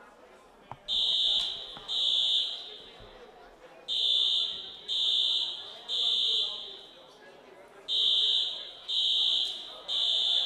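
Fire alarm sounding in a large hall: high-pitched electronic beeps about one a second, coming in short groups of two or three with a pause between groups, each beep echoing away.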